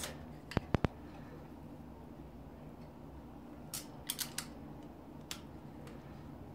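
Small sharp clicks of a folding multi-tool's hex key working a seat-post clamp bolt on a steel bicycle frame. Three quick clicks come just under a second in, and a softer cluster of clicks follows around four seconds in.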